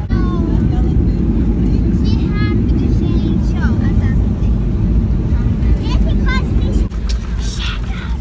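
Cabin noise of a Boeing 737 airliner on its landing roll, with the spoilers deployed: a loud, steady low rumble from the engines and the wheels on the runway, easing slightly near the end.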